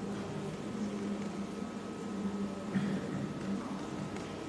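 Steady low hum and hiss of room noise, with a faint steady high tone and one soft click about three seconds in.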